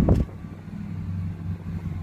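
Car engine and road noise heard from inside the cabin while driving: a steady low rumble that drops noticeably quieter a fraction of a second in, as if the car eases off the throttle.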